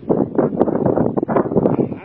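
Wind buffeting the microphone in uneven gusts, loud and rumbling.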